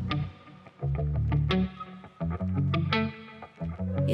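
Music: heavy bass notes that start and stop in short phrases, with sharp percussive hits.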